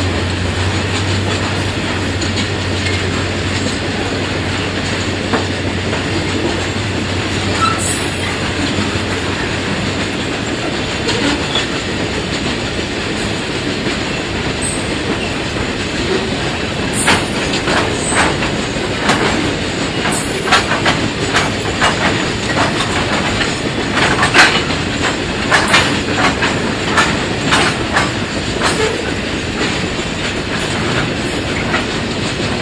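Grain hopper wagons of a long freight train rolling past with a steady rumble, a low hum fading out about a third of the way in. In the second half the wheels clack rapidly and irregularly over the rail joints, with a few brief high squeals.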